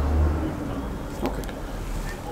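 A low rumble of background noise, strongest in the first half second, with faint voices and a light click about a second in.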